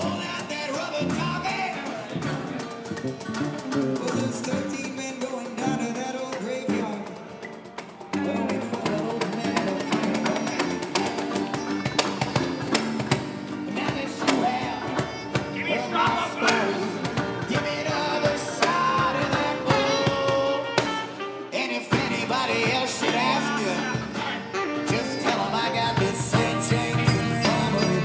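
Live street band playing a song: fiddle, acoustic and electric guitars and saxophone, with a man singing at the microphone.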